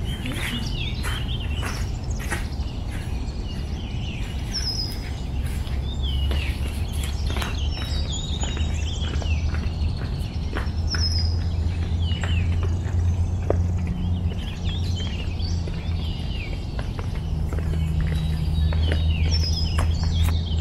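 Birds chirping and calling, many short quick chirps one after another, over a low steady hum that comes in about a quarter of the way through.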